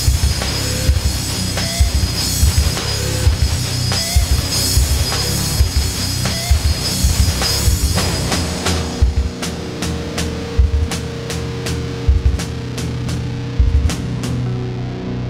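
Heavy metal band playing an instrumental passage with drum kit and guitars and no vocals. About eight seconds in, the dense full-band playing thins to a held chord under evenly spaced drum hits.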